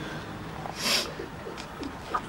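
A person crying quietly: a sharp, sniffling breath about a second in, with faint short whimpering sounds around it.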